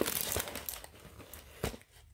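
Crinkling of the clear plastic cover film on a diamond painting canvas as it is handled, strongest at first and fading away, with a short click near the end.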